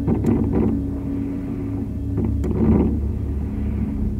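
Distant fireworks: a steady low rumble with a few short, sharp pops as shells burst.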